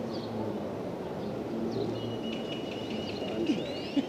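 Outdoor background noise: a steady low rumble with a hum that comes and goes, and in the second half a thin, steady high whistle that ends in a rising sweep.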